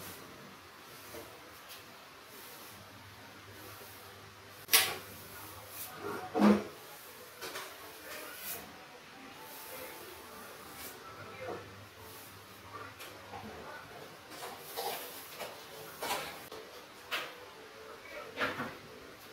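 A hand pressing and rubbing strips of masking tape flat against a painted wall: faint, scattered rubbing and tapping, with two sharper knocks about five and six and a half seconds in.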